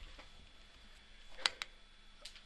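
Two short, sharp clicks close together about a second and a half in, the first louder, over faint room noise.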